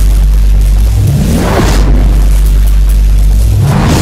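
Cinematic countdown-intro music and sound effects: a loud, steady deep bass rumble. A rising whoosh sweeps up about a second in, and another begins near the end.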